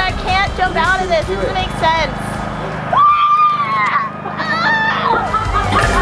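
Several people talking excitedly, with one long high-pitched yell about three seconds in, over background music.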